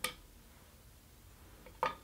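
Quiet room with one short, sharp handling sound near the end, as yarn or a tool is handled at a rigid heddle loom.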